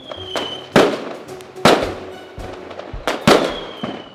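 Fireworks: a whistle dropping slightly in pitch, then three sharp bangs, each with a crackling tail, and another falling whistle near the end.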